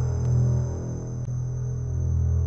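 A steady low hum, dipping a little in the middle, with a faint thin high-pitched whine held above it and a few faint clicks.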